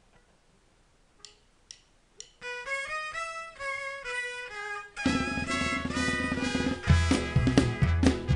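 After a near-silent pause broken by three faint clicks half a second apart, violins play the opening melody of a mariachi song, one note at a time. About five seconds in the full mariachi band comes in, with guitarrón bass, strummed guitars and drum kit, and it gets louder near the end.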